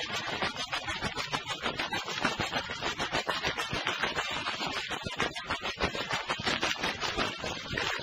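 Opening of a 1972 Yugoslav folk duet record playing from an old vinyl disc, with dense crackle and surface noise over the music.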